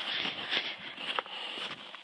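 Footsteps crunching in snow as someone walks.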